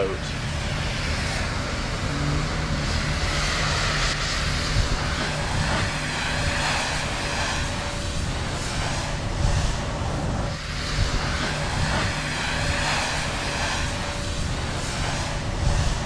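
Steady engine rumble with a broad hiss over it, going on without a break.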